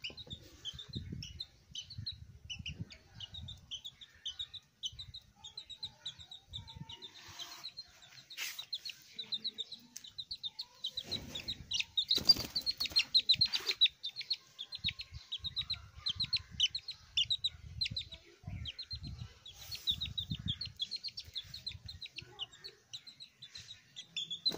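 A young chicken chick peeping over and over in short, high calls. About halfway through it is picked up by hand: the peeping gets louder and faster, with a flurry of wing flapping.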